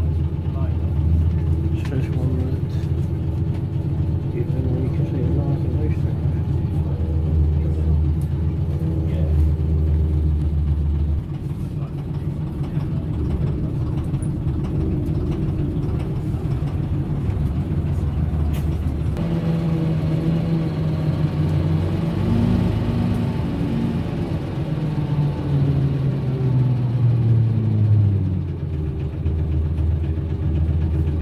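Leyland National Mark 1 bus engine heard from inside the saloon, running steadily. Its note changes about eleven seconds in, and from about nineteen seconds the pitch rises and falls for several seconds.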